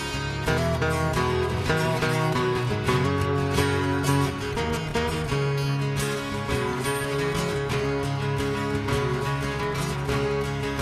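Acoustic guitar strummed, playing a song with steady, even strokes.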